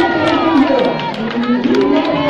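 Many voices raised together at once, a congregation in a crowded room, with scattered hand claps.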